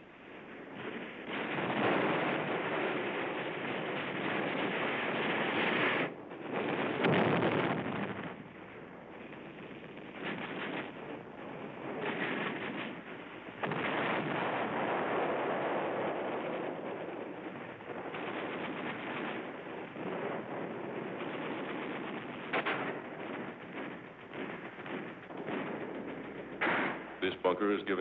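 Gunfire on a battle soundtrack: scattered shots over a constant harsh din, with a quick run of shots near the end.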